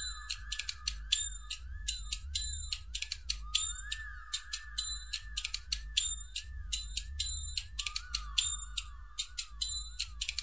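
Electronic sound effect through a loudspeaker: rapid, rhythmic ticking with high ringing tones, over a tone that swoops up and down again and again.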